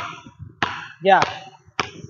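Basketball dribbled on a hardwood gym floor: a few sharp bounces, each with a short echo off the hall's walls.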